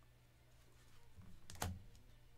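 A rigid plastic card holder set down on the table mat with a short click about a second and a half in, over a faint steady room hum.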